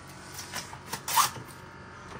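Saran Wrap plastic cling film pulled from its box and stretched over a tray, with a few short crinkles and a louder rasp a little over a second in as the film is torn off against the box's cutter edge.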